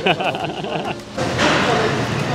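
A man laughing briefly, then a steady, loud rushing noise that starts about a second in.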